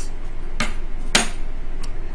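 Sharp clicks: a small one about half a second in, a louder one just after a second, and a faint one near the end, over a steady low hum.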